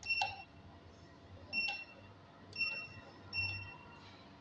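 ATM PIN keypad beeping once for each key pressed: four short, high-pitched beeps at uneven intervals as the PIN is entered, the last one slightly longer.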